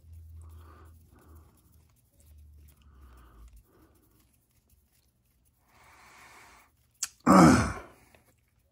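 A man coughs once, loudly, near the end, after a short breath. Before that there is only faint handling noise.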